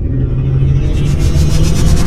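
Cinematic logo-intro sound effect: a loud, deep rumble with a steady low drone, swelling as a high flutter joins about a second in and speeds up as it builds.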